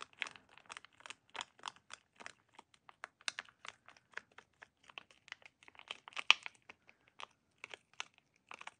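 A thin wooden stick stirring white-tinted epoxy resin in a small thin plastic cup: a quick, irregular run of small clicks and crackles as the stick knocks and scrapes the cup wall, with one sharper click about six seconds in.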